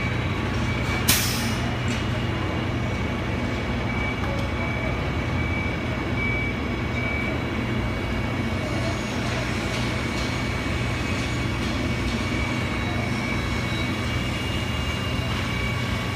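Heavy vehicle engine running steadily amid street traffic, with a short sharp hiss about a second in.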